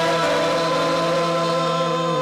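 A man singing a long held note with vibrato over a steady sustained accompaniment chord.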